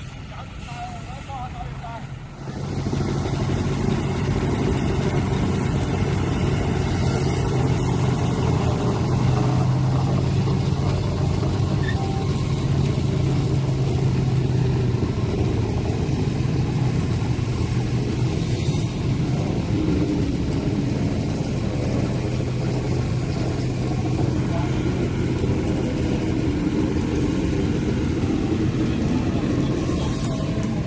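Diesel engine of a road-rail vehicle running steadily as it pulls a Plasser & Theurer track-tamping work train along rail. It comes up about two and a half seconds in with a low, even hum and holds steady.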